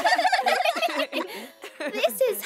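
Cartoon children's voices singing a strained, warbling 'la' whose pitch quavers rapidly, breaking into short choppy sounds about halfway through. Holding ballet poses while singing makes the notes wobble, and the singers find it hard.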